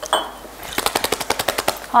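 A rapid rattle of sharp clicks, about fifteen a second, starting about a second in and lasting about a second.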